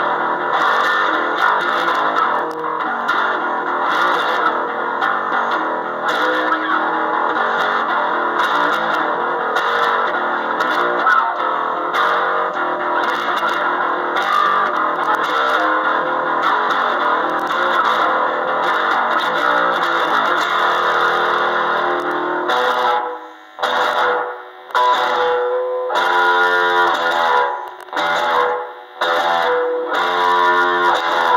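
Gear4music Precision-style electric bass played with effects and reverb in a dense, continuous riff. Near the end it breaks into short phrases with brief stops between them.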